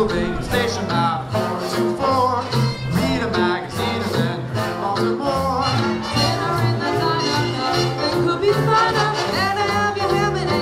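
Swing big band playing live: saxophones, trumpets and trombones over piano, guitar, upright bass and drums, with an even, driving beat.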